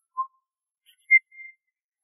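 Sparse background music: two short, high, whistle-like notes about a second apart, the second higher and trailing on faintly, with near silence between them.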